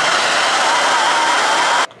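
Hand-held hair dryer running on a steady blast with a faint motor whine, aimed into an open jar of beeswax to melt it. It switches off abruptly just before the end.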